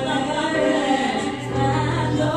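A female vocal trio singing a gospel song in close harmony into microphones, with piano accompaniment; a low bass note comes in and is held near the end.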